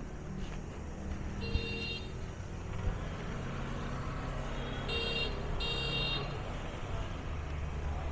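Street traffic noise with motorbike horns: a short beep about one and a half seconds in, then a quick double beep about five seconds in, over a steady low rumble of passing engines.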